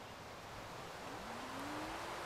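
A motor vehicle accelerating at a distance: a single engine tone rising in pitch through the second half, over a steady outdoor background hiss.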